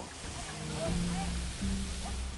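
Storm noise of wind and surf, a steady loud hiss, with low held notes of background music underneath.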